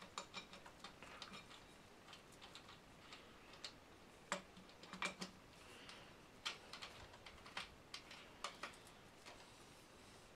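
Faint, irregular small clicks and light knocks of an aluminium pipe being fitted into a black plastic frame connector and the connector's fittings being handled, with the sharpest clicks about four and five seconds in.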